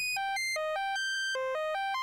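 Xfer Cthulhu's built-in synthesizer playing an arpeggiated chord pattern: short pitched notes stepping up in quick runs, about six a second, with one longer held note near the middle.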